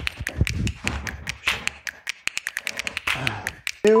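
A quick, irregular run of sharp clicks and taps, several a second, with a few low thumps among them.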